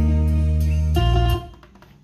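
Recorded guitar music with a deep, steady bass line, played from a CD through Allison CD9 loudspeakers driven by a Pioneer SX-939 receiver. The music fades out about a second and a half in as the CD player changes track.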